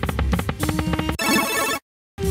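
Book of Ra Deluxe 10 online slot game sound effects: the reel-spin tune with rapid ticking, then a bright ringing burst as the reels land. It cuts off suddenly shortly before the end.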